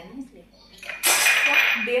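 Steel kitchen utensils clattering: a lid and pots knocking together, a loud metallic clatter about a second in that lasts just under a second.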